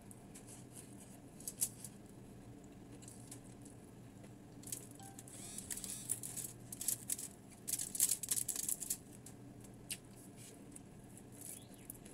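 Crispy fried tilapia being picked apart by hand on a sheet of aluminium foil: scattered crackles and rustles, thickest in a cluster through the middle.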